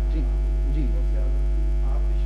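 Steady low electrical mains hum from the microphone and sound system, with faint traces of a man's voice in the first second.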